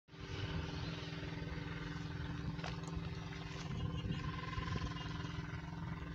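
Steady machine hum with a low rumble underneath, from an irrigation well's electric pump running.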